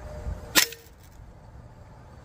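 A single shot from an unsuppressed Hatsan Invader Auto .22 PCP air rifle firing a 21-grain H&N slug: one sharp crack about half a second in.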